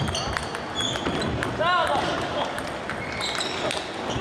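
Celluloid-type table tennis balls clicking sharply off rackets and tables, many irregular knocks overlapping in a reverberant hall, over a murmur of voices.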